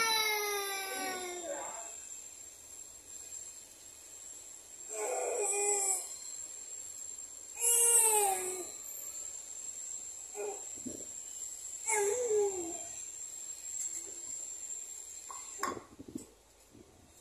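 A toddler vocalizing: four short, drawn-out wordless calls with quiet spells between them, the pitch falling away at the end of most.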